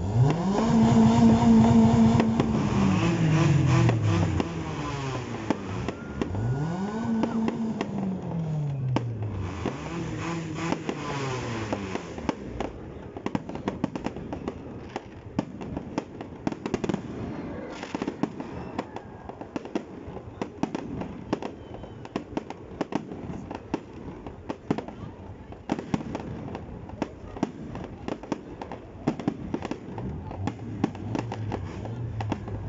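Aerial fireworks popping and crackling, with many sharp bangs through the second half. In the first twelve seconds a loud pitched sound rises, holds and falls three times.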